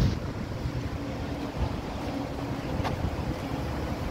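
Wind buffeting an outdoor phone microphone: a steady low rumble with faint, indistinct background sounds.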